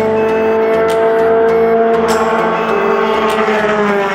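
Open-wheel race car engine running at high revs, its pitch holding steady and then falling near the end as the car goes by.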